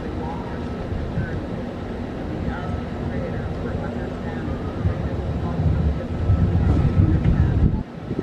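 A man's voice addressing an outdoor crowd, faint and distant, under a low, uneven rumble. The rumble grows louder over the last few seconds and cuts off abruptly just before the end.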